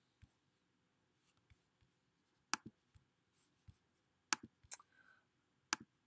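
Computer mouse clicks: a handful of sharp single clicks with quiet between them, a few close together a little past the middle.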